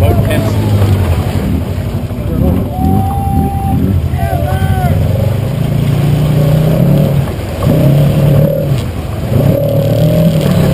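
ATV engine working under load as the quad drives through a muddy water hole and climbs out, revving up and down with the throttle, rising about three quarters of the way through. Brief shouted calls sound over it near the middle.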